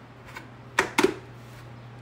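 A few sharp plastic clicks and knocks about a second in, from a motorcycle helmet's shell being handled and turned in the hands.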